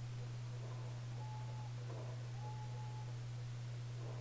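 A steady low hum with faint room noise, broken twice near the middle by a faint, short, steady high tone.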